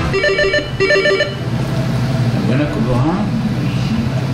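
Desk telephone ringing twice in quick succession, each ring a rapid electronic trill of several tones, over a steady low hum.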